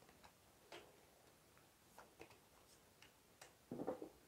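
Tarot cards being dealt onto a table: a few faint, short clicks and taps as cards are laid down, with a soft card rustle near the end.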